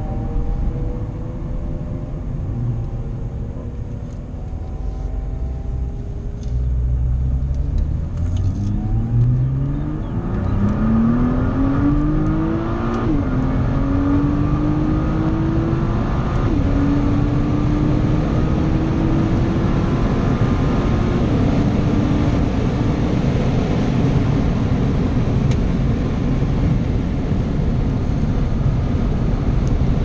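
Nissan GT-R's twin-turbo V6 heard from inside the cabin under hard acceleration: after a few seconds of lighter running, the engine note climbs steeply from about six seconds in, drops back briefly at three upshifts, then settles into steady high-speed running under heavy road and wind noise.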